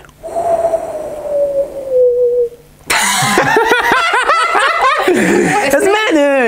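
A single held tone that falls slightly in pitch for about two seconds, then, after a brief pause, people laughing and chattering excitedly.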